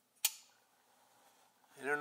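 A custom flipper folding knife flipped open: one sharp metallic snap about a quarter second in as the blade swings out and locks, with a brief ring after it.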